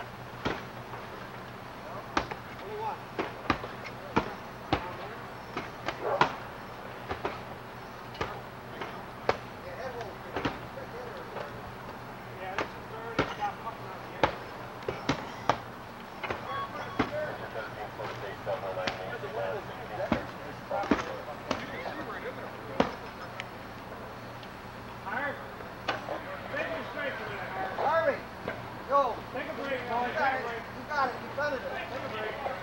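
Irregular sharp knocks and chops, at times several a second, from firefighters' hand tools striking a shingled house roof, over a steady low hum, with voices calling in the background that grow more frequent near the end.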